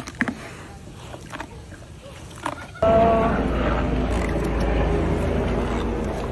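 A hippopotamus gives a loud, deep, breathy blast about three seconds in, with a brief pitched groan at its start, then holds steady. A few faint clicks come before it.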